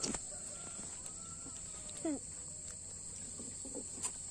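Steady high-pitched insect drone, with a short falling call about two seconds in.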